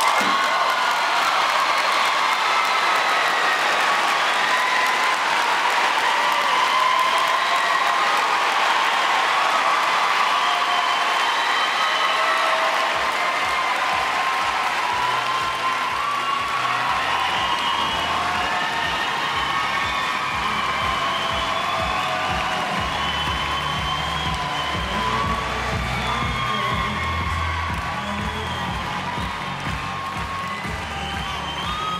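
A large arena crowd cheering and applauding, breaking out suddenly and staying loud throughout, at the end of an equestrian vaulting routine.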